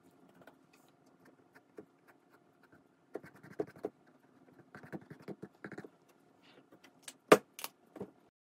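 Small taps and clicks of a paintbrush and tools being handled on a work table, over a faint steady hum, with two sharp clicks close together near the end.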